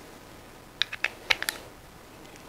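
Small metal parts (a washer and connector hardware) clicking together as they are handled and fitted by hand: a quick run of about six light clicks in under a second, starting near the middle.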